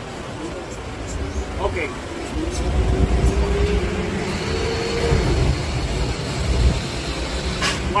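Low rumble of a motor vehicle's engine going by in the street, swelling from about two and a half seconds in, with a faint steady drone from about two to five seconds in.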